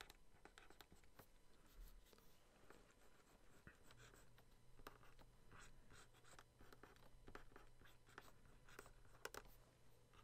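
Faint scratching of a stylus pen on a Wacom graphics tablet, drawn in many short, quick strokes.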